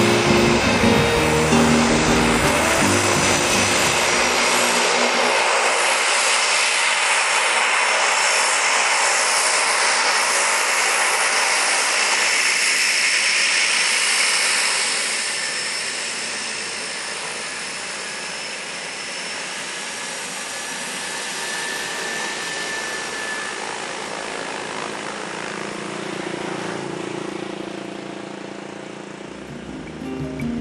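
Cessna 208B Grand Caravan single-engine turboprop running: a steady rush of engine and propeller noise with a thin high turbine whine, loud for about the first half and then fading away. Music plays at the start and returns near the end.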